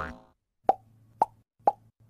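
Cartoon-style pop sound effects: three short plops about half a second apart, each with a quick upward-bending tone, and a fourth right at the end.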